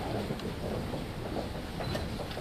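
Room noise of people filing in and settling at a table: a steady low rumble with shuffling and a few faint clicks.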